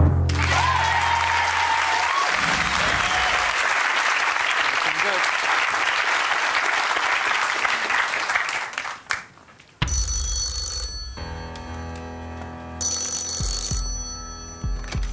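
Studio audience cheering and applauding for about nine seconds, then breaking off. Background music comes in, and a telephone rings near the end: the banker's call.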